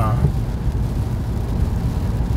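Inside a moving car's cabin on a wet road: a steady low rumble from the engine and tyres, with a light hiss from rain and road spray.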